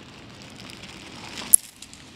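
Faint rustling and small clicks of dogs eating from a man's hand, with one sharp click about a second and a half in.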